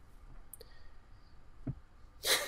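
Quiet room tone broken by two faint clicks: a sharp one about half a second in and a duller one near the end.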